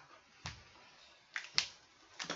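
Faint sharp clicks: a soft low knock about half a second in, then two quick clicks close together about a second and a half in.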